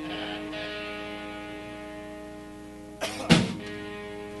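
Electric guitar strumming a chord and letting it ring out, fading slowly, then a sharp, louder stroke about three seconds in that sets the chord ringing again.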